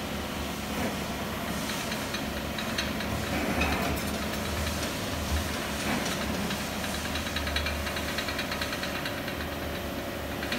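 Gas torch flame burning steadily, with a low rumble under an even rush of noise, as it heats a bronze sculpture for a hot patina.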